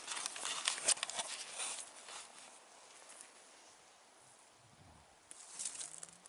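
Footsteps and rustling on stony ground and dry brush: a cluster of short scuffs in the first two seconds, a quiet stretch, then more steps near the end.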